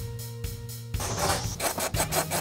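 Socket ratchet clicking rapidly as the 10 mm bolts holding the subwoofer are backed out, starting about a second in, over background music with a steady beat.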